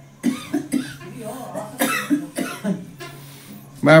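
A woman coughing into her hand: a few short coughs early on, then another cluster about two seconds in.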